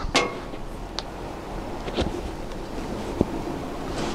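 Cables being handled, with a few faint clicks about a second apart, over steady outdoor background noise with some wind on the microphone.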